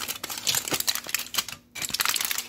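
Aluminium foil wrapper crinkling as it is unwrapped by hand: quick, irregular crackles with a short pause near the end.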